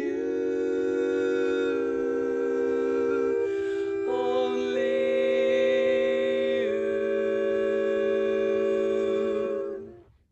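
A women's barbershop quartet sings a cappella in close four-part harmony. The voices hold long chords and shift together into new chords several times, with a brief break a little before the middle, and the last chord fades out just before the end. This is the close of an original barbershop-style intro, which modulates into the key of the chorus.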